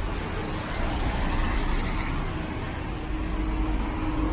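Steady street noise on a rain-wet city street: an even hiss with a low rumble and a faint steady hum, as of traffic and tyres on wet road.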